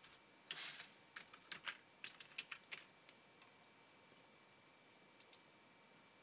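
Faint computer keyboard typing: a quick run of about a dozen keystrokes, then two more clicks near the end.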